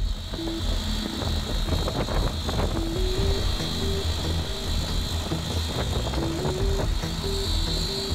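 Background music with a slow stepping melody, laid over the steady running of construction machinery at a concrete pour, with a constant high whine.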